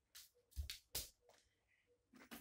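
Faint, short rustles, about three within the first second, from hands working in braided hair; otherwise near silence.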